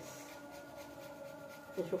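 Quiet kitchen with a faint steady electrical hum and soft scratchy rubbing as cheese is sprinkled by hand onto pizza toast. A woman's voice starts near the end.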